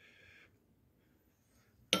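Near silence: faint room tone with a brief soft hiss at the start; a voice starts suddenly at the very end.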